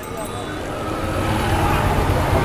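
A low rumble, like a running engine, growing steadily louder, with faint voices underneath.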